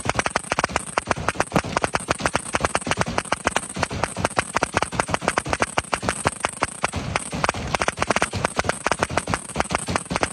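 Fireworks barrage from ground-fired batteries: a rapid, unbroken run of bangs, many a second.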